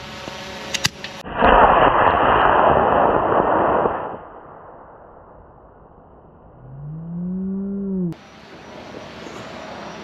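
D-class model rocket motor igniting at liftoff: a couple of sharp clicks, then a loud rushing roar lasting about three seconds that fades as the rocket climbs. Later a person lets out one long, drawn-out rising exclamation.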